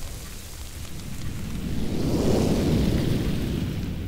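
A rumbling, hissing whoosh sound effect for a magical transformation into a larger demonic form. It swells to a peak about two seconds in, then eases off.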